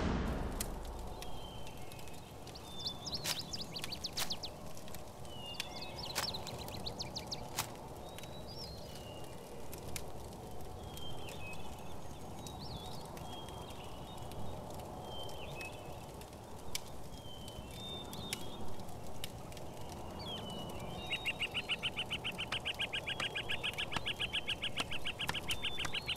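Countryside ambience: scattered short bird chirps and trills over a steady low background, with a few sharp clicks. Near the end a fast, evenly pulsed trilling call runs for about five seconds.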